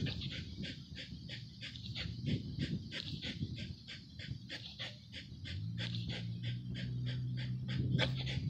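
Pit bull breathing hard in quick, even breaths, about five a second, while it hangs on and tugs a hide tied to a strap. A low steady hum comes in about five and a half seconds in.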